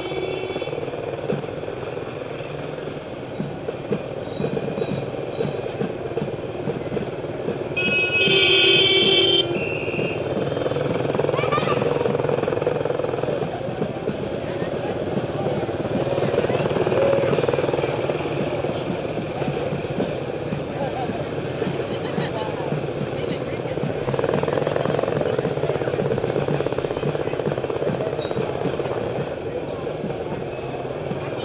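Motorcycle engine running steadily at slow parade pace, heard from the bike carrying the camera, with other motorcycles around it. About eight seconds in, a loud high-pitched tone is held for about a second and a half.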